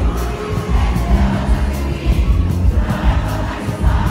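Live concert music through a stadium PA, with a heavy, pulsing bass beat and percussion, over the noise of a large crowd.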